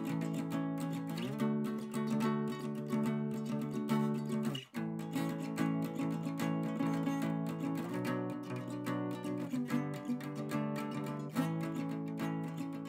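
Solo acoustic guitar playing chords that ring and change every second or so, with a brief break in the sound a little under halfway through.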